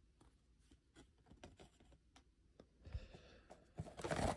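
Near silence, with a few faint taps and a brief soft rustle about three seconds in as trading cards are handled.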